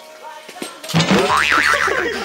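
A cartoon "boing" sound effect about a second in: a springy tone that wobbles up and down in pitch over a low hum, timed to a bounce on a pogo stick.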